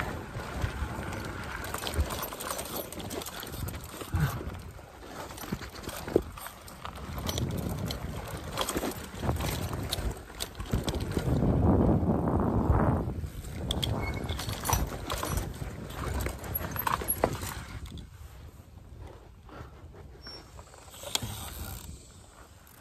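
Electric mountain bike riding down a dirt trail: tyre and trail noise with frequent knocks and rattles from the bike over bumps and roots. It gets louder for a couple of seconds about halfway through and quieter over the last few seconds as the bike slows.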